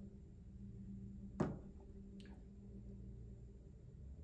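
Quiet room tone with a low steady hum, broken by one sharp click about a second and a half in and a fainter click a little under a second later.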